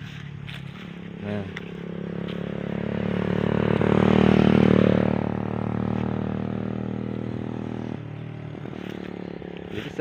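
A motor vehicle passing on the road: its engine hum grows louder to a peak about halfway through, then fades away.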